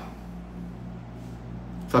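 Steady low hum with faint background hiss: room tone in a pause between speech.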